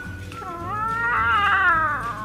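A drawn-out animal call that wavers up and down in pitch and swells to its loudest near the end.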